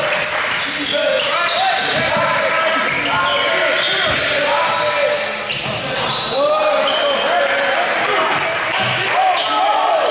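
Live basketball game on a hardwood gym floor: the ball bouncing on the dribble and sneakers squeaking in short, repeated chirps, with players' and coaches' voices echoing in a large hall.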